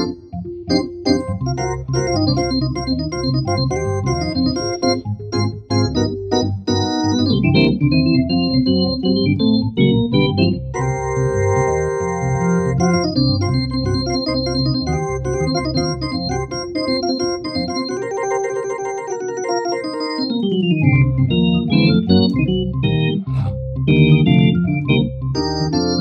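Software Hammond-style organ played from a keyboard, with sustained chords broken by quick runs sweeping up and down the keys.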